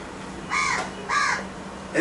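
Two short, harsh bird calls about half a second apart.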